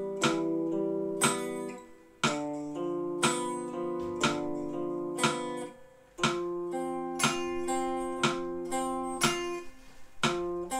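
Guitar picking arpeggiated chords, each note ringing on, over a metronome clicking once a second at 60 bpm. The sound dips briefly about two and six seconds in, between phrases.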